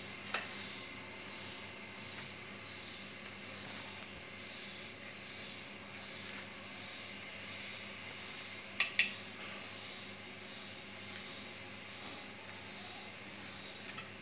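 Knife blade knocking on a plastic cutting board while slicing soft idlis: one sharp click just after the start and a quick double click about nine seconds in, over a steady faint hiss.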